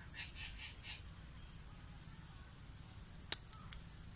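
Small screwdriver working at a plastic shampoo bottle's cap: a few faint ticks, then one sharp plastic click a little over three seconds in, over quiet outdoor background with a faint steady high tone.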